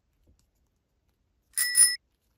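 A short bell-like notification ding, a subscribe-button sound effect: two quick rings about a second and a half in, after near silence.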